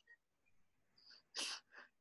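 Near silence, then about a second and a half in, a short, sharp breath from a man on a headset microphone, with a fainter one just after.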